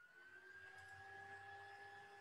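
Near silence: a faint steady high tone, rising slightly at the start, with two fainter lower tones and a low hum.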